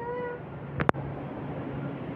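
A short high-pitched call at the start, about half a second long, then a single sharp click a little under a second in.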